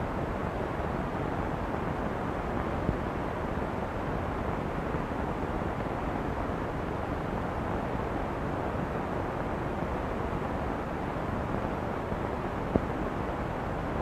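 Steady hiss and rumble of an old 1960s film soundtrack carrying no recorded sound, with a couple of faint clicks.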